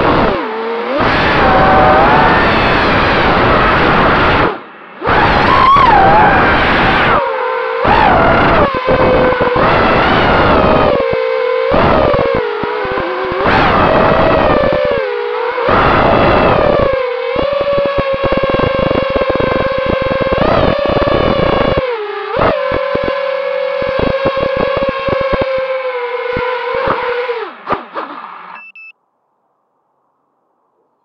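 The brushless motors and propellers of a GE 220 FPV mini quadcopter, recorded by the camera on the quad itself. The whine rises and falls in pitch as the throttle is punched and cut, with repeated sudden gaps. From about 17 seconds in it settles into a steadier tone, then stops suddenly about 28 seconds in.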